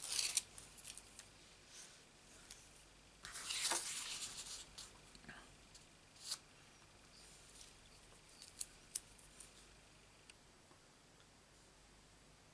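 Hands working with paper and double-sided adhesive tape: a few light clicks, then a rasping peel of the tape's backing liner about three seconds in. After that come scattered single soft taps and ticks of card being set down.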